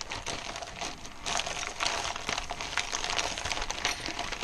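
Clear plastic zip bags of kit tools and parts being handled and opened, crinkling and rustling in a continuous run of small crackles.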